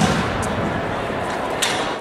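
A heavy thump right at the start as a pole vaulter lands on the foam landing pit, then a sharper knock near the end, over the steady noise of a busy indoor track hall.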